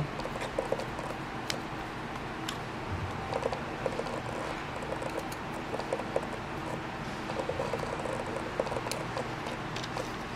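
Hand screwdriver turning small screws into a circuit board in a plastic indicator housing: faint scattered ticks and scratching over a steady background hiss.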